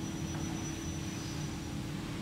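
Steady low background hum with a thin, high-pitched steady tone over it that stops near the end.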